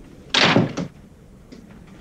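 A door slamming shut once, hard, with a short rattle after the hit.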